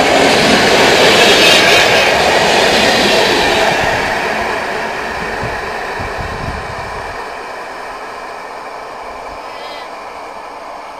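Passenger coaches rushing past at speed, their wheels running on the rails. The noise stays loud for about the first four seconds, then fades steadily as the tail of the train recedes.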